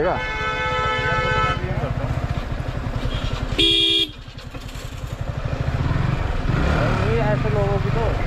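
Motorcycle engine running in traffic, with a vehicle horn sounding for about a second and a half at the start and a second, louder horn blast about three and a half seconds in.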